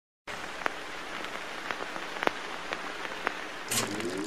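A steady hiss like rainfall, with sharp drip-like ticks about every half second. Near the end there is a brief bright burst and a short rising tone.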